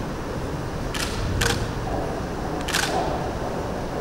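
Camera shutters clicking three times, the first two close together about a second in and the third near three seconds, over a steady low room hum.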